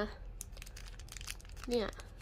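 Clear plastic bag around a small capsule-toy figure crinkling in the fingers, as a run of small irregular crackles.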